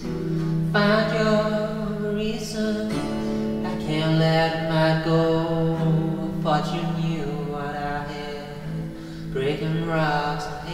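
Indie rock song: drawn-out sung vocal phrases over guitar and a held low chord.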